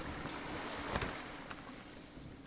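Sound effects of wind and ocean surf, with a few short flaps and a steady low hum underneath, fading down through the second half.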